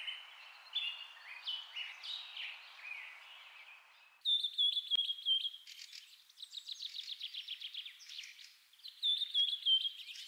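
Birds chirping and singing over a light hiss. About four seconds in the sound changes abruptly to a different stretch of song: a repeated warbling phrase and fast rhythmic trills.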